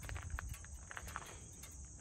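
Faint outdoor ambience: a steady high-pitched insect chirring, with a few soft ticks of footsteps and camera handling.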